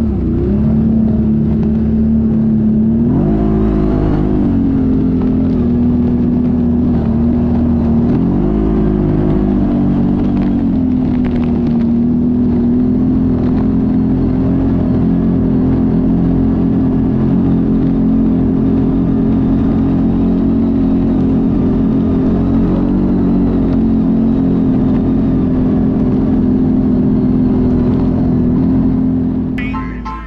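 CFMoto ATV's V-twin engine running on a trail, revving up and easing back twice in the first ten seconds, then holding a steady cruising note.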